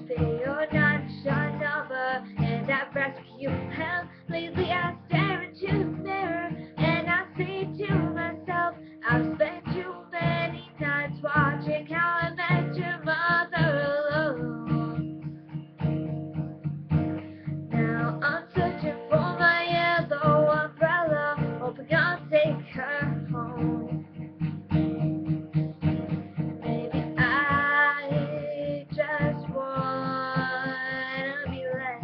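A girl singing a pop-rock song while strumming a steel-string acoustic guitar in a steady rhythm.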